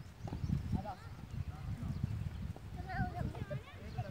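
Children's voices calling out at a distance on an open ground, short high-pitched shouts about a second in and again near three seconds, over a steady low, uneven rumble.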